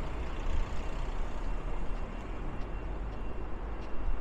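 Steady rumble and tyre noise of heavy road traffic on a busy four-lane road and flyover.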